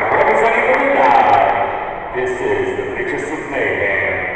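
A man speaking into a microphone over a public-address system.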